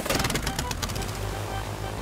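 Cartoon propeller-plane engine starting up with a fast puttering rattle that fades after about a second, over background music.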